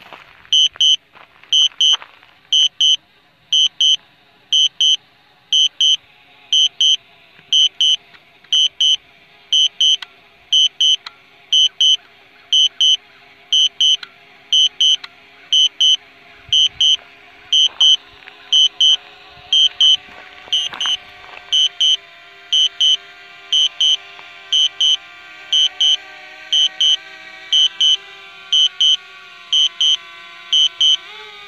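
Drone remote controller sounding a warning alarm: loud pairs of high beeps about once a second. Under it a drone's propeller hum grows louder in the second half as the drone comes down to land.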